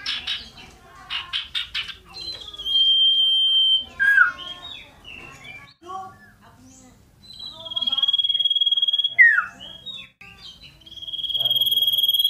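A caged common iora singing loudly. Its song has three long, drawn-out whistles of well over a second each, some ending in a quick falling slur, with busy chattering notes in between. Near the start there is a quick run of sharp fluttering sounds as it jumps about the cage.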